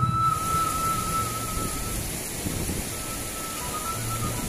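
Background music: a Sundanese bamboo flute (suling) holds one long note that fades out about halfway, over low accompaniment. A steady rushing-water hiss sits underneath.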